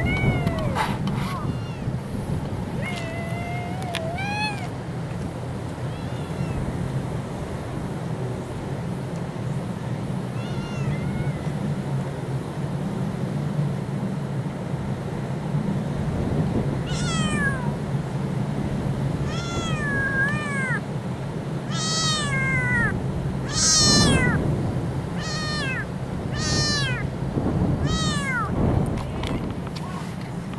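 A kitten meowing: a few scattered high meows in the first seconds, then a quick run of repeated meows over the second half, loudest a little past the two-thirds point.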